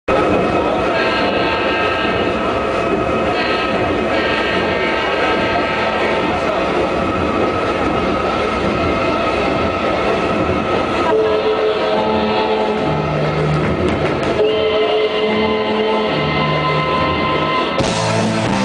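Live rock band playing a slow intro of long sustained chords, with held low bass notes coming in about two-thirds of the way through before the full band enters.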